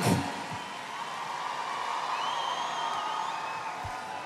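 Large outdoor festival crowd cheering and applauding in a steady wash of noise.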